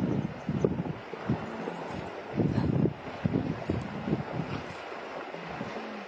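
Wind buffeting the microphone in irregular low gusts that rise and fall, with no clear sound from the animals.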